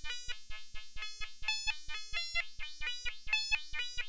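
Modular synthesizer voice run through a DIY Moog-style transistor ladder highpass filter, playing a fast step-sequenced pattern of short notes that change pitch from note to note, each note cut short by an attack-decay envelope. The tone is bright and thin, with the bass filtered away.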